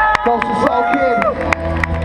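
Crowd of spectators shouting and whooping in long drawn-out calls, with a few sharp claps, in reaction to the judges' decision.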